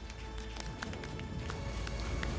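Music accompanying the launch animation: a deep steady rumble with a few held tones and scattered light clicks.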